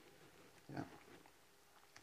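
Near silence: room tone, with one faint short spoken "yeah" a little under a second in.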